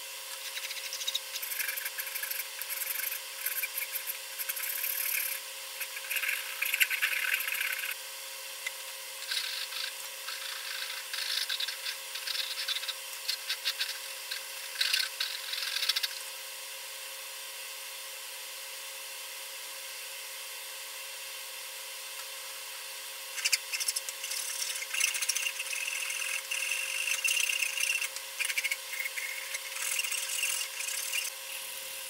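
Hand files shaping a walnut saw handle: quick rasping strokes of metal teeth on hardwood, in spells, with a few seconds' pause in the middle.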